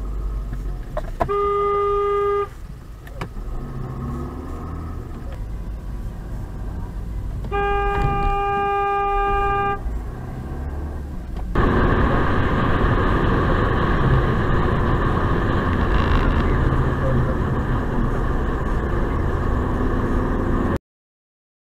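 Car horn sounding twice over the rumble of a car on the move, heard from inside the cabin: a blast about a second long near the start, and a longer one of about two seconds just before halfway. About halfway through, a louder steady road and tyre noise of faster driving takes over.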